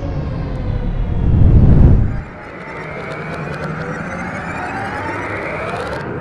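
Sci-fi outro sound effect: a deep rumble swells to a loud peak and cuts off suddenly about two seconds in, followed by a layered whine that slowly rises in pitch.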